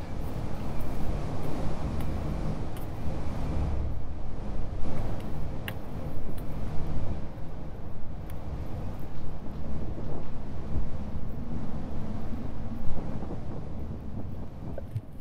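Gusty wind buffeting the microphone: a loud, uneven low rumble that rises and falls, with a few sharp clicks.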